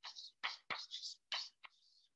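Chalk writing on a chalkboard: a quick run of short, faint scratching strokes with light taps, as a word is written out.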